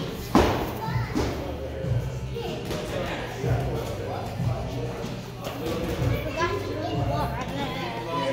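Children's voices and background music with a steady beat, echoing in a large gym hall. About a third of a second in comes one sharp thud, a gloved punch landing on a heavy punching bag.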